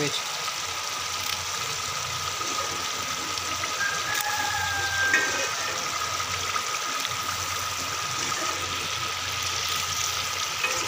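Pot of urad dal and minced meat in water boiling on a gas stove, a steady bubbling hiss.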